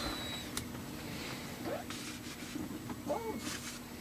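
Quiet, steady low hum with faint handling noise from a plastic oil jug and a rag being moved, and two short, soft voice sounds.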